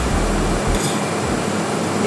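Steady rushing noise of a ventilation fan running, with a low rumble that comes and goes.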